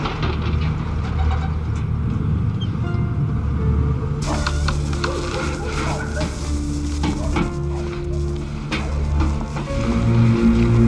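Tornado sound effect: a deep, continuous wind rumble that is joined about four seconds in by a sudden loud hissing rush full of crackling, clattering debris. Music with long held notes plays under it.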